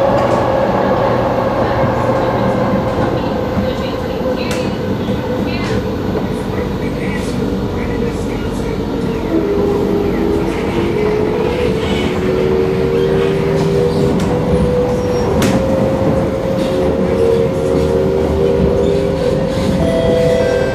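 MRT electric train running, heard from inside the carriage: a steady rumble of wheels on the track with a motor whine that falls slightly in pitch over the first few seconds. From about halfway, several motor tones step up and down in pitch, and a few sharp clicks come from the track.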